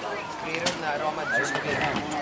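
Children's high-pitched shouts and calls, with a single sharp knock about two-thirds of a second in.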